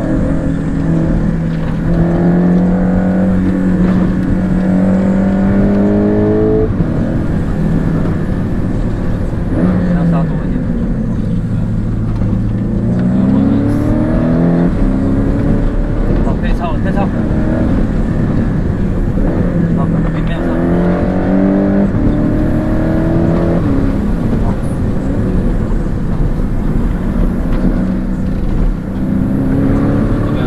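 Porsche 718 Cayman engine heard from inside the cabin, pulling up through the revs several times, each time rising in pitch over a few seconds and then dropping suddenly as the driver shifts up or lifts off.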